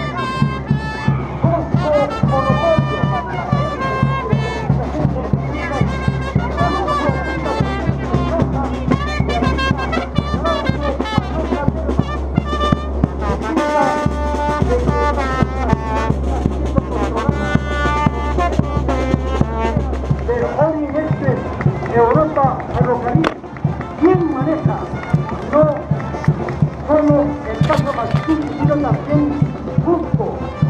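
A brass band with drums playing lively parade music with a steady beat. About two-thirds of the way through, the deep bass part drops out and the music changes.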